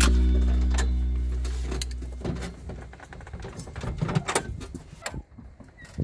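Background music fading out over the first two seconds or so, then scattered clicks and knocks of a seatbelt and a person shifting about in the seat of a side-by-side utility vehicle, with a louder thump near the end as he climbs out through its half door.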